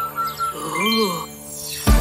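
Cartoon twinkling chime effect with a short rising-and-falling tone while the song's beat pauses; the full backing music with its beat comes back in just before the end.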